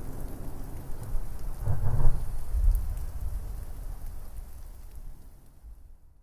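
Rain hiss with a low rumble of thunder that swells to its loudest about two to three seconds in, then dies away near the end.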